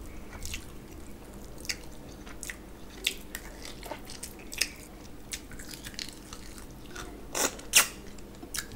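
Eating by hand: fingers squishing rice and mutton curry together on a plate, with short wet mouth smacks and chewing clicks scattered throughout. Two louder smacks come close together near the end as a handful goes into the mouth.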